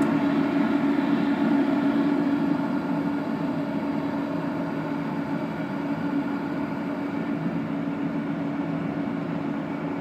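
Everlast 256Si inverter TIG welder and its water cooler running, the cooling fans and cooler pump making a steady hum that eases slightly in level. The welder is coming back up after restarting itself at idle, an unexplained fault.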